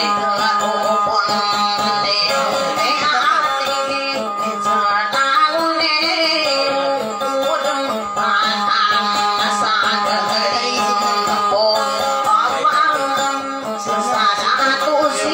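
A woman singing through a microphone, accompanying herself on a small acoustic guitar.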